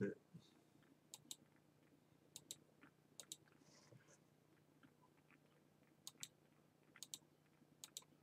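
Faint computer mouse clicks, several quick pairs of sharp clicks spread through, over quiet room tone with a low steady hum.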